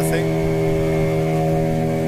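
A motorboat's engine running under way, a steady, even-pitched drone.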